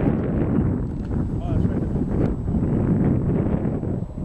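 Wind buffeting the microphone: an uneven low rush and rumble that rises and falls.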